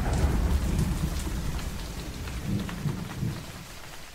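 Thunderstorm sound effect: steady rain with a low rolling rumble of thunder, slowly fading away.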